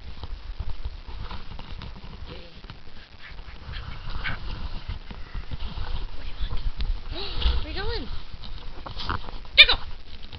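Scottish terrier giving playful vocalizations: a few short rising-and-falling whines about seven seconds in, then one sharp, loud bark just before the end, with rustling and scuffling on the quilt throughout.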